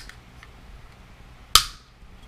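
One sharp click, about one and a half seconds in, as small hard GoPro mount parts are handled.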